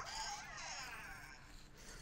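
Boxer toy robot making its electronic voice sounds from its small speaker: faint warbling chirps.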